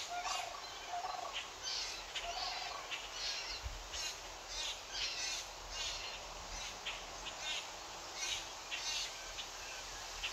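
Small birds chirping and singing in a string of short, high, warbling calls, with a few lower short calls in the first few seconds, over a steady background hiss.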